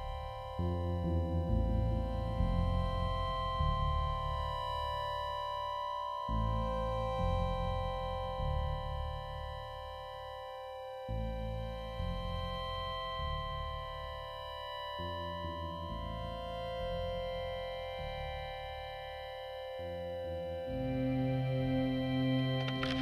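Beatless electronic dance music (IDM) from a DJ set: steady, held synthesizer chords over a deep bass that changes note every few seconds.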